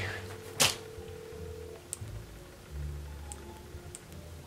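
A phone on speaker plays the ringing tone of an outgoing call: one steady ring about two seconds long. A sharp click comes just after the ring starts.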